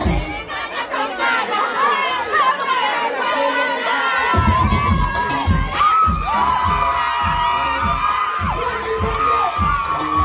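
A concert crowd screaming and cheering, many voices rising and falling together. For the first four seconds the backing track's bass and beat drop out, leaving the crowd on its own, then the drum beat with a steady hi-hat ticking comes back in under the cheering.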